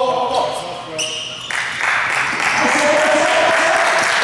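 Gym din from basketball players: the coach calls out, then about a second and a half in a sudden wash of noise starts and holds, with men's voices shouting over it.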